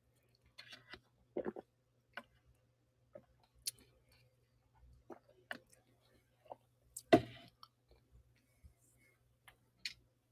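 Faint scattered clicks and small taps, with one louder thump about seven seconds in, over a faint steady low hum.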